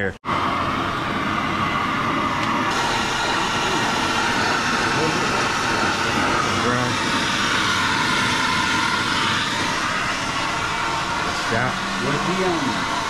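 Oxy-fuel cutting torch burning with a steady, loud hiss as it cuts through suspension bracket bolts seized with rust.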